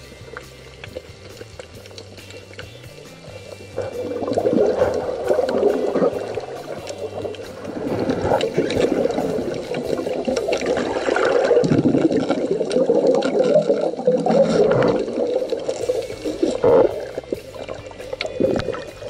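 Background music over muffled underwater water noise, with a louder rushing and bubbling from about four seconds in.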